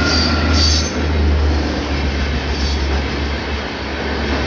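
Electric-hauled passenger train passing close by at speed: a steady rumble of coaches and wheels running on the rails.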